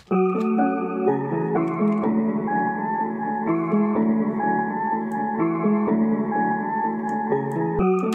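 Chopped, pitched-down melodic sample loop playing back in FL Studio, layered with a copy pitched up an octave and widened by the Fruity Stereo Shaper on its Stereoize 3 preset. Sustained chords and notes shift every half second or so, with no drums.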